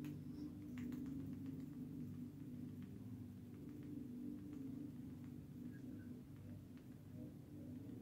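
Quiet, steady low hum with a few faint soft taps as fingertips dab BB cream onto the skin.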